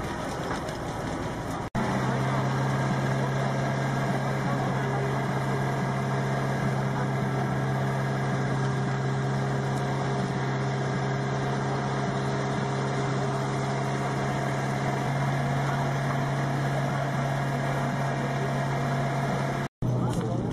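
A fire truck's engine running at a steady, unchanging pitch, with voices in the background.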